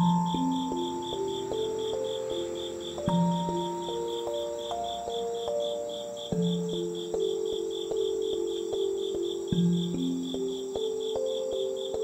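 Slow, gentle background music of single struck notes that ring out and fade, over a steady insect chorus: crickets chirping in an even pulse of about four to five chirps a second, with a higher steady trill above.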